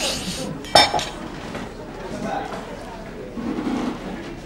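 Kitchen knife cutting through a rolled burrito on a wooden chopping board, a short scrape, then one sharp clink about a second in, followed by quieter handling of crockery.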